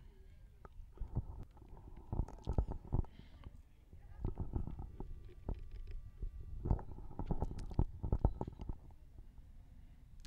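Irregular low rumbles and bumps on the camera's microphone, coming in clusters, the kind made by wind buffeting or handling of the camera.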